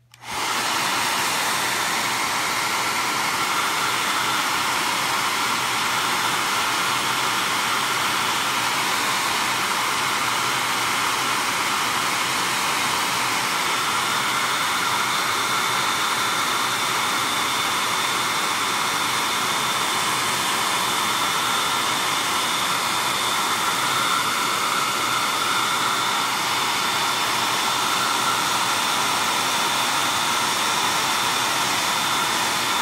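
Handheld Class Act hair dryer switching on at the start, then running steadily: an even rush of blown air with a faint whine.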